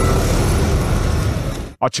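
Armoured military vehicle driving past, a steady engine and road noise that cuts off abruptly near the end.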